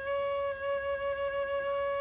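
A single flue pipe of a pipe organ sounding one steady high note on its own: a cipher, the pipe's valve stuck and not closing, which the organist suspects is caused by dust under the valve.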